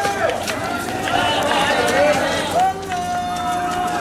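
A man's voice chanting in long held notes, with a longer held note near the end, over street noise and scattered sharp knocks.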